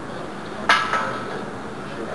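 A sharp metal-on-metal clank with a brief ring, followed by a smaller second clank, from a loaded barbell and bench-press rack as the lifter sets up under the bar.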